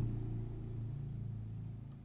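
A low, steady rumbling hum that slowly fades away, with a faint click near the end.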